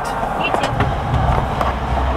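A passenger getting out of a car through an open rear door, with a few light knocks and rustles, over a low rumble of vehicle and street noise that swells about a second in. Faint voices are also heard.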